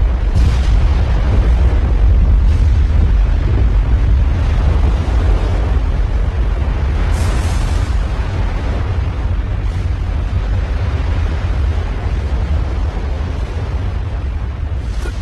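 Animated battle sound effect: a loud, deep, continuous explosion-like rumble that slowly fades, with a few sharper bursts on top of it.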